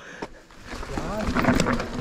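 Mountain bike rolling down a dirt singletrack: tyre noise on loose dirt with knocks and rattles from bumps, under wind on the helmet microphone, growing louder about half a second in.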